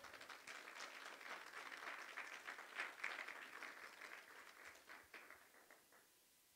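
Congregation applauding, faint, thinning out and dying away near the end.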